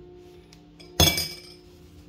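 A single sharp metallic clink about a second in, a metal utensil striking once and ringing briefly, over steady background music.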